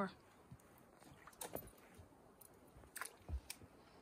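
Quiet, faint flow of a small shallow stream, with a few soft taps and clicks about a second and a half in and again around three seconds.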